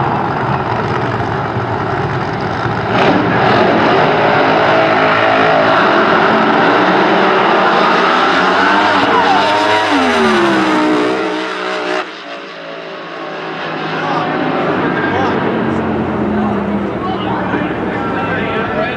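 Two alcohol-burning Top Alcohol Funny Car drag racers launching and running at full throttle down the strip. Their pitch sweeps downward about ten seconds in. About twelve seconds in the loud engine sound drops off suddenly, leaving a quieter, lower engine sound.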